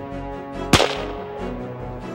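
A single rifle shot fired during a sight-in at the range: one sharp crack about three-quarters of a second in, dying away quickly.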